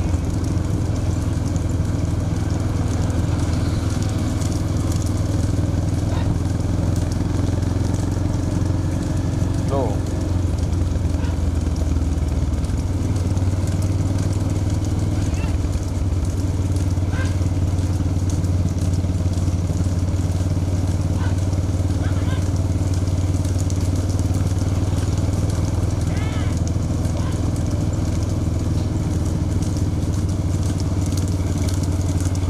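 Several motorcycle engines running steadily at road speed, with road and wind noise and voices calling out now and then.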